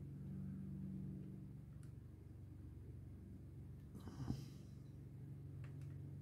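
Quiet room with a steady low hum, and a few faint clicks of small plastic model-kit parts being handled and pressed into place. A short breathy rush and a soft knock about four seconds in are the loudest sounds.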